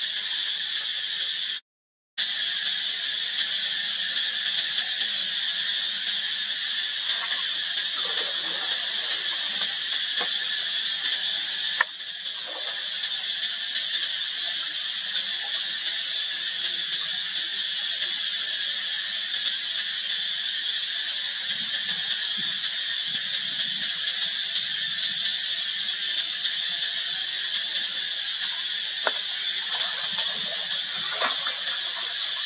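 Steady, high-pitched drone of an insect chorus, cicada-like, holding an even level throughout. It cuts out briefly about two seconds in.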